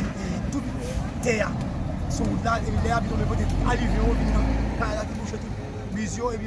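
A man speaking, over a low engine rumble that grows louder in the middle.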